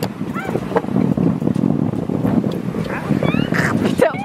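Plastic sleds sliding over snow while being towed, a steady grainy scraping and crunching, with a few brief voices calling out near the start and near the end.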